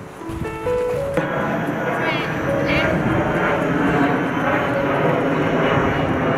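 Piano background music, joined about a second in by a louder, noisy din of children's voices and shouts, with a high squeal a couple of seconds in.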